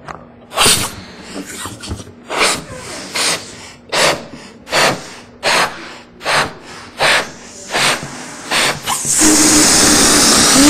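A person blowing up a rubber balloon in a pumping rhythm: about a dozen quick, sharp breaths, each a snatch of air through the nose and a blow into the balloon, a little more than one a second. Near the end the air is let out of the balloon in a loud, steady rush with a low buzz.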